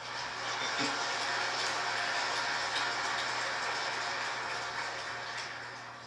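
Audience applauding, a steady patter that tapers off near the end.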